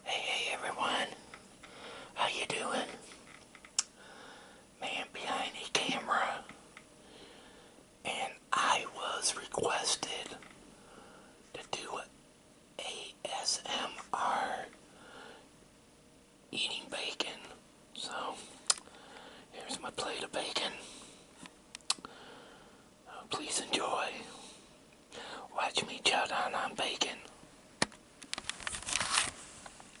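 A man whispering close to the microphone in short phrases, with pauses between them.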